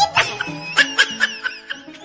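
Background music with a short laugh over it in the first second and a half: a quick run of breathy laugh pulses.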